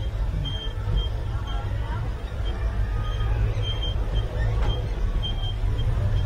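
Woodstock Gliders ride car travelling along its track with a steady low rumble. Short high-pitched squeaks come and go irregularly over it.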